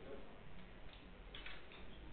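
Billiard balls in play on a pocketless carom table: faint clicks of the balls knocking, two about half a second apart, about a second in, after the cue stroke.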